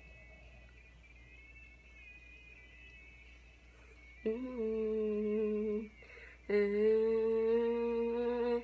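A voice humming two long, steady notes, the first about four seconds in and the second a little after six seconds, after a few faint seconds.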